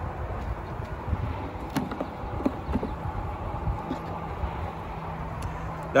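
A steady low rumble, with a few light clicks and knocks as a wooden hive frame is lifted out of the hive box and handled with a metal hive tool.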